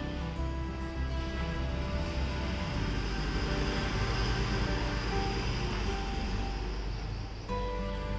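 Soft acoustic guitar background music with steady notes, over an even hiss that fades out shortly before the end.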